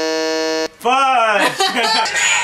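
Game-show style buzzer sound effect, typical of a wrong answer: one flat, steady buzz that cuts off suddenly under a second in. Voices follow it.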